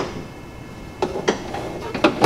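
Deck height lever of a Husqvarna lawn tractor worked by hand, giving a sharp click at the start, then two clunks about a second in and another near the end as it moves between its height positions.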